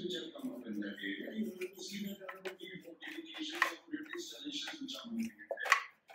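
Voices talking in the background, with occasional light taps and rubbing as hands press a sheet of dough flat in an aluminium baking tray.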